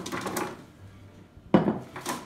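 Coated squash slices tumbling from a glass bowl onto a parchment-lined sheet pan, with light clatters of the bowl and pan on a wooden counter mostly in the first half-second. A spoken "and" comes near the end.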